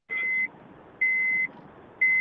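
A high electronic beep, about half a second long, repeating once a second over a faint hiss.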